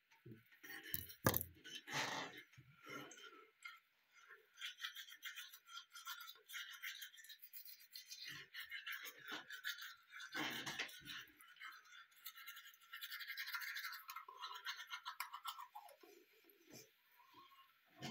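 Teeth being brushed with a rechargeable electric toothbrush: a quiet, continuous scrubbing hiss of the bristles against the teeth, with a few soft knocks along the way.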